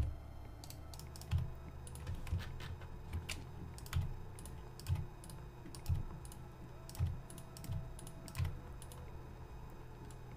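Computer keyboard keys and mouse buttons clicking irregularly, about once a second, over a faint low hum.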